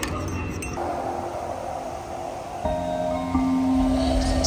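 Background music of soft held notes, with more notes joining and the music growing louder about two and a half seconds in.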